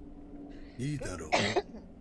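A person coughing: a short voiced sound, then one sharp cough about a second and a half in.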